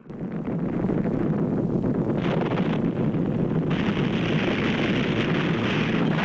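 A loud, steady roaring noise with no clear pitch that starts abruptly. Its hissing upper part grows brighter briefly about two seconds in and again from just before four seconds.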